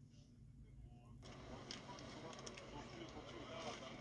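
Faint, indistinct voices over a low hum. About a second in, the background noise rises suddenly and small clicks and handling noises come in.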